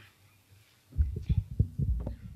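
Podium gooseneck microphone being handled and adjusted: a run of irregular low thumps and rumble in quick succession, starting about halfway through.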